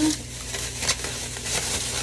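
Food sizzling in a cooking pot: a steady hiss with light clicks and one sharp click about a second in.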